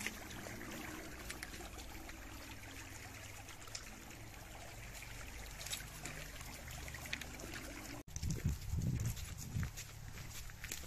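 Shallow forest stream trickling over stones. About eight seconds in the sound breaks off briefly, then a few loud, low rumbling bumps of noise on the microphone.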